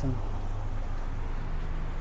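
Steady low rumble of street traffic, with a faint engine hum.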